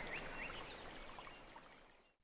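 Faint background soundscape of running water with a few short chirps, fading out to silence near the end.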